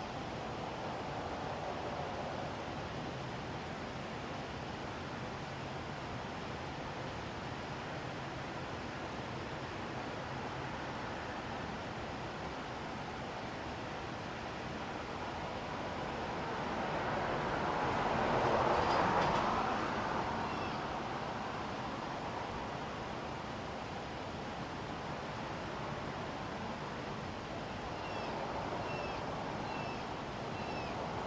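Steady outdoor background noise, with a passing vehicle that builds, peaks about two-thirds of the way in and fades away. A few faint high chirps come near the end.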